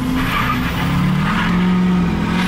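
Chevy Duramax diesel V8 pickup launching at full throttle from a standstill, heard from inside the cab, its engine note climbing about halfway through. The tires lose some traction on the launch.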